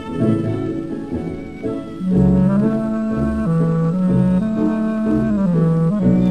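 Tango dance orchestra playing an instrumental passage from a 1930 78 rpm shellac record. From about two seconds in, the band plays louder, long held melody notes that step between a few pitches.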